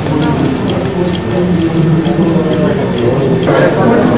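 Spectators' voices talking and calling out, not as clear words, with a run of quick clicks several a second.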